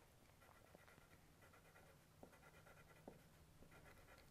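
Near silence with faint scratching of a pencil on paper as short strokes are drawn, including a few light ticks.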